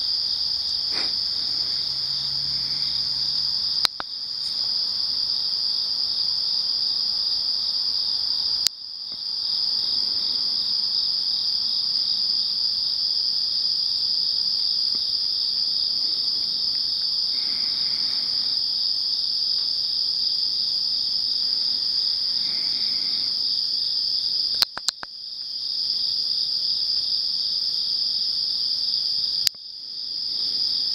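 Steady high-pitched chorus of night-singing insects, with a pulsing layer just beneath the main drone. It is broken by four sharp clicks, near 4, 9, 25 and 29 seconds, and the chorus dips briefly after each before coming back up.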